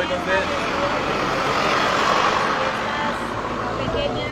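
A road vehicle passing by, its engine and tyre noise swelling to a peak about halfway through and then fading.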